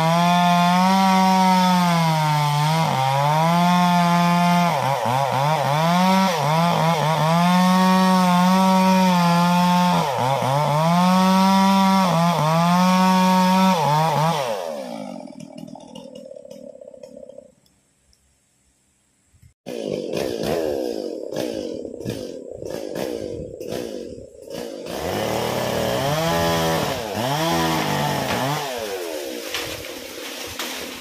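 Two-stroke chainsaw running at high revs, its pitch sagging and recovering again and again as the chain bites into wood, then winding down about halfway through. After a short silence it runs again, more unevenly, with a series of sharp knocks.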